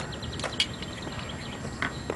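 Scattered light clinks and taps of tableware being set on a table, with a quick run of faint high ticks in the first second.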